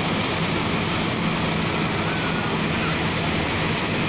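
A moving bus's engine hums steadily under even road and wind noise.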